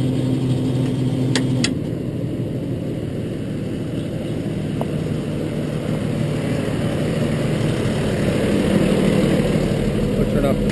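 Truck engine idling steadily, its revs unchanged because the jetter's throttle switch gives no momentary up or down. A steady hum with two sharp clicks stops about a second and a half in.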